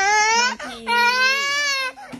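A toddler crying in two drawn-out wails, the second one longer.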